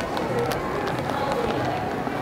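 Indistinct voices and busy background noise in a supermarket, with a few light clicks.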